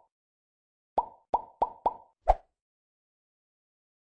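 Five quick plop sound effects from an animated channel logo, each a short pop with a brief tone, coming in a fast run between about one and two and a half seconds in.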